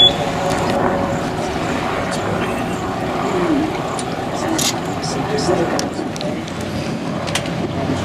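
A boat's motor running steadily under soft, indistinct voices of passengers. A brief high beep sounds at the very start.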